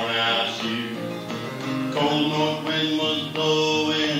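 Acoustic guitar being strummed, ringing chords struck in a steady rhythm about every two-thirds of a second.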